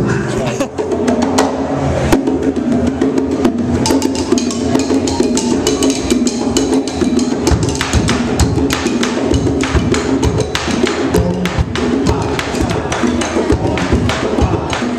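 Live percussion music: hand drums and a wooden xylophone struck with mallets, playing a quick, busy rhythm of sharp strikes.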